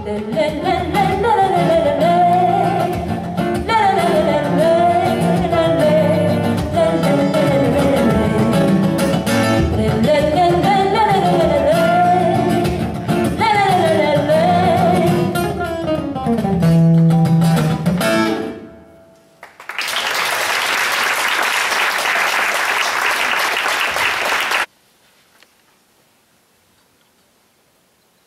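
A woman sings a live song into a microphone over instrumental accompaniment, ending on a held low note about two-thirds of the way through. About a second later an audience applauds for roughly five seconds, then it falls almost quiet.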